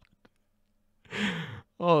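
A man sighs once, a breathy exhale about a second in that lasts about half a second, with a few faint mouth clicks just before it.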